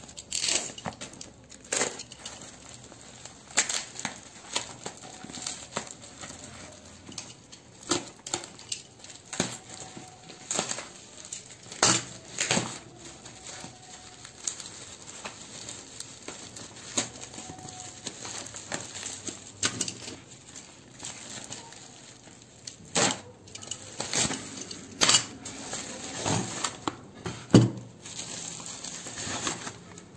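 Plastic bubble wrap crinkling and rustling as hands pull it off a cardboard box, with irregular sharp crackles scattered throughout.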